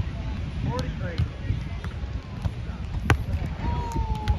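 Wind rumbling on the microphone, with distant voices, and a single sharp smack of a volleyball being struck about three seconds in.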